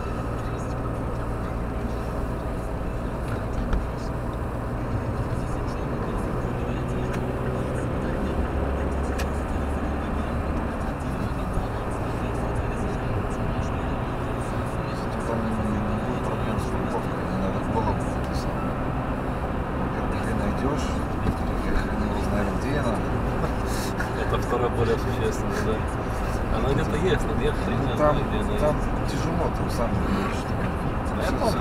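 Car cabin noise while driving onto and along a motorway: a steady low drone of engine and tyres on the road, heard from inside the car.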